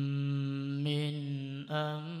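A man's voice reciting the Quran in melodic tajweed style, holding one long steady note. There is a brief break near the end before the next phrase begins.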